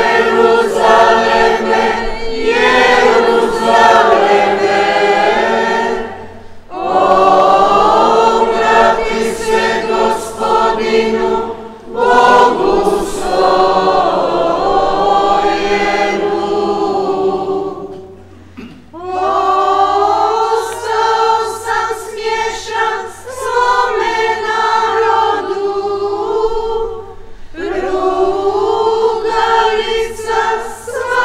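Church choir singing a hymn in phrases a few seconds long, with short breaks between them.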